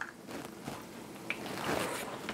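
Faint handling noise: soft rustling with a couple of light clicks as a carton is picked up from a kitchen counter, over quiet room tone.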